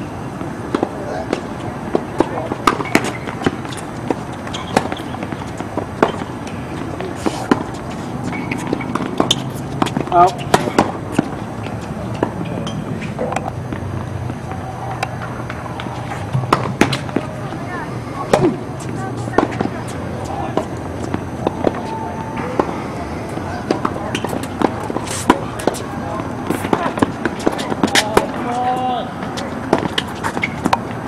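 Tennis balls struck by rackets and bouncing on a hard court: sharp pops repeating at uneven intervals, some from nearby courts. Distant voices are heard faintly.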